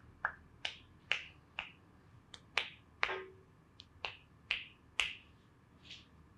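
Massage therapist's hands, pressed palm to palm, striking the head in a clapping massage technique, making about a dozen sharp claps at roughly two a second.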